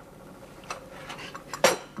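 China teacups and saucers clinking as tea is served: a light tap about two-thirds of a second in, then a louder, sharp clink with a brief ring near the end.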